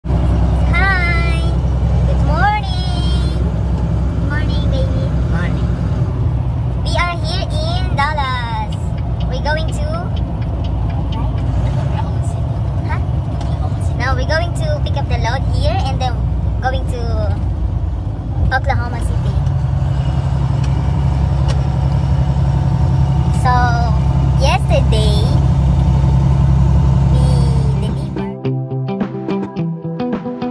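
Woman talking inside a semi-truck cab over the truck's steady low engine and cab drone, which shifts slightly in tone a little past halfway through.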